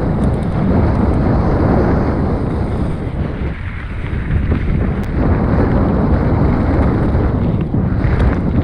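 Wind buffeting the microphone of a camera riding on a moving mountain bike: a steady, loud, low rushing noise that eases briefly about three and a half seconds in.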